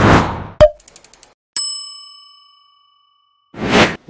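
Animated logo sound effects. A whoosh is followed by a sharp hit and a quick run of clicks, then a bright bell-like ding that rings out and fades over about two seconds, and a second whoosh near the end.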